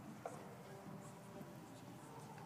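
Hushed concert hall between pieces: faint rustling and shuffling, with a few soft held notes from the orchestra's instruments and a small click about a quarter second in.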